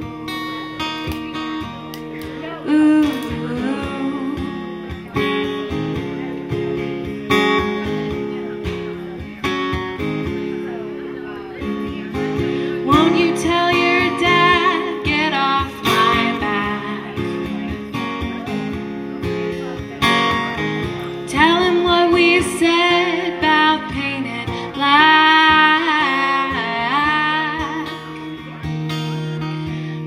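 A song played live on acoustic guitar with singing. The guitar runs throughout, and the voice comes in mostly in the second half.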